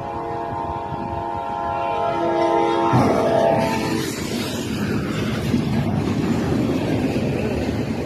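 Freight locomotive horn blowing steadily. About three seconds in, a loud crash as the train strikes the truck's trailer, followed by the continuing noisy rumble of the train and flying debris.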